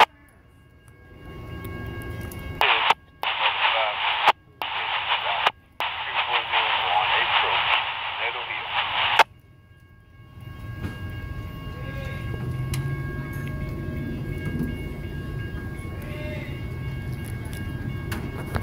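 Railroad radio transmission over a scanner for several seconds, thin and band-limited, cut by short squelch gaps; it stops suddenly about nine seconds in. A low steady rumble follows for the rest.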